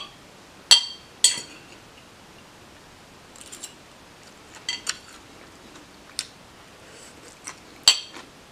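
Metal fork clinking against a ceramic plate and dishes: a series of sharp, briefly ringing clinks, the two loudest about a second in and another strong one near the end, with fainter taps between.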